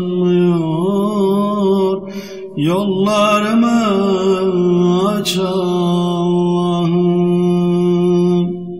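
Unaccompanied Turkish ilahi: a male voice sings a long, pitch-bending melismatic line without clear words over a steady held drone. There is a short break for breath about two seconds in, then the line resumes and is held.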